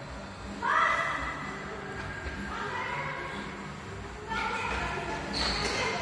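Children's high-pitched shouts and calls, four short cries a second or two apart.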